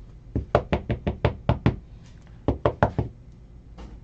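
A thick plastic magnetic card holder (a 180-point one-touch) rapped on a tabletop to settle the card straight inside it: a quick run of about eight sharp knocks, a short pause, then four more.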